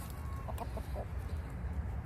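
Chickens clucking quietly: a short thin held note, then a few brief clucks within the first second, over a low steady rumble.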